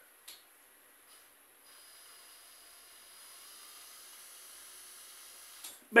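Quiet room tone with a faint steady hiss, and a single small click just after the start. A man's voice begins right at the end.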